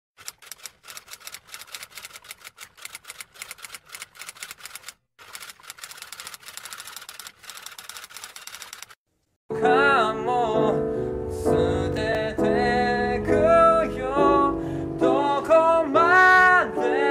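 Typewriter key-clicking sound effect, rapid clicks for about nine seconds with a short break near five seconds. After a brief silence, a man starts singing with piano accompaniment, which becomes the loudest sound.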